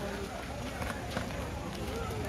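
Indistinct background chatter of several people talking at outdoor tables, over a low steady hum of ambient noise.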